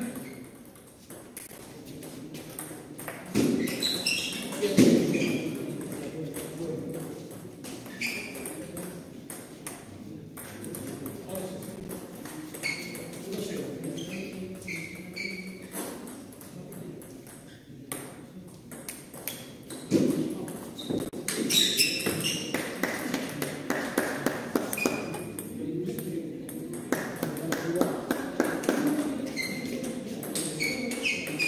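Table tennis balls striking paddles and bouncing on the tables in short rallies, each hit a sharp click with a brief high ping, over a murmur of voices in a hall.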